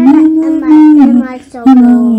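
A voice singing a slow, lullaby-like song in Swedish, holding long notes. The phrase breaks for a moment about one and a half seconds in, then a new held note starts.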